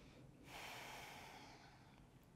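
One faint breath from a person standing close to the microphone: a soft hiss that starts about half a second in and fades out over roughly a second.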